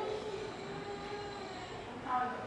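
A faint steady hum, a few even tones over low background noise.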